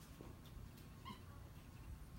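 Capuchin monkey giving one brief, faint, high squeak about a second in.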